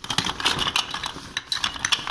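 A hand rummaging in a fabric pouch of spent tear-gas grenade parts and propellant cartridges: rapid clicks and clatter of hard plastic and metal pieces knocking together, with rustling of the pouch.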